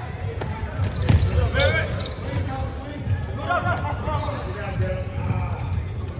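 A basketball bounces on an indoor court floor in several sharp thuds as it is dribbled and played, while players call out on the court.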